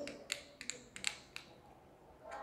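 A few faint, sharp clicks, about four in the first second and a half, over quiet room tone.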